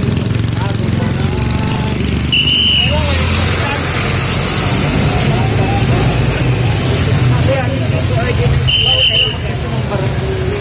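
Passing street traffic: motorcycle and vehicle engines running steadily at close range, with background voices. Two short, high, steady beeps sound, one about two seconds in and one near the end.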